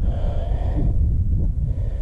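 Wind buffeting an action camera's microphone, a steady low rumble.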